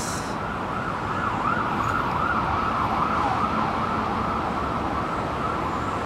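A distant siren wailing, its pitch sweeping up and down several times before fading out, over a steady background of traffic noise.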